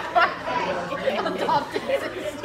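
A young woman laughing hard, with other voices chattering around her.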